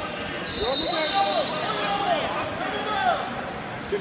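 Indistinct voices of several people calling out at once in a gymnasium, overlapping short shouts with no clear words.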